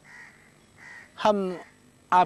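A few faint, short bird calls in the background, with one short spoken syllable from a man about a second in.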